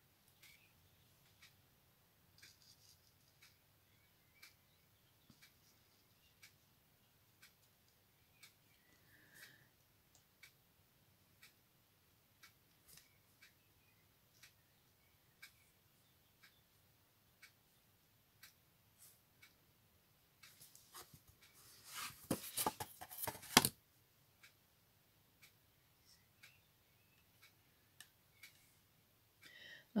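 Faint, scattered small clicks and taps of a thin metal tool and paper cut-outs being handled on a craft board, with a louder patch of crackling handling noise about 21 to 24 seconds in.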